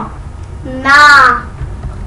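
Speech: one voice chanting the single Marathi syllable "ṇā" (णा), drawn out for about half a second, about a second in.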